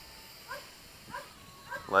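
An animal giving short calls at an even pace, about one every 0.6 seconds. Beneath them runs the faint, steady high whine of a small quadcopter's motors in flight.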